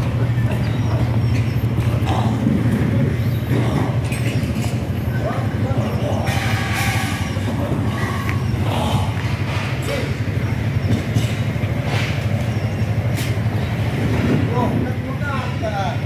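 Outdoor ambience in an open city plaza: a steady low rumble with faint voices of people nearby.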